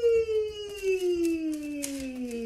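A woman's voice sliding slowly and steadily down in pitch on one long held note as a giant slinky is stretched downward: a vocal-play glide whose pitch follows the slinky, for young children to copy.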